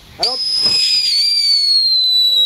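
Ground firework fountain whistling: a loud, high whistle starts suddenly a moment in and glides slowly down in pitch as the fountain sprays.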